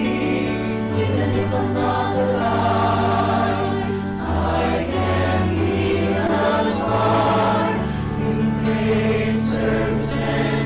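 Choir singing a slow sung prayer, with long held notes over a low bass line that moves to a new pitch every second or two.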